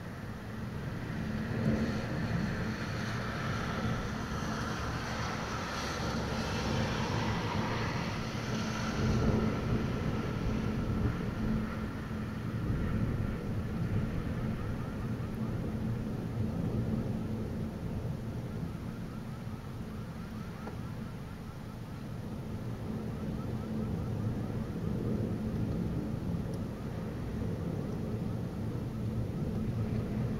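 Long rolling thunder rumbling over steady rain, swelling to its loudest about nine to ten seconds in and then fading into a lower, lingering rumble.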